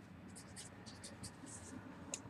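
Marker pen writing numbers on a whiteboard: a faint series of short, scratchy strokes.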